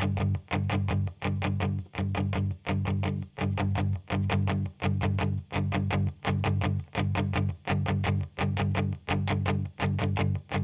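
Electric guitar from the song's backing track playing a repeated riff alone, each short phrase cut off by a brief gap about every 0.7 seconds, with no drums.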